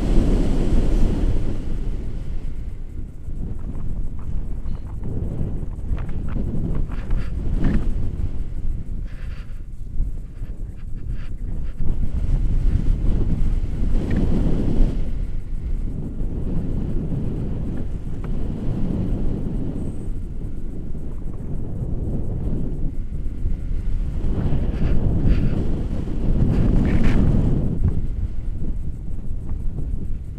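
Wind buffeting a selfie-stick camera's microphone in flight under a tandem paraglider: a continuous low rumble that swells and eases in gusts, with a few brief rustles.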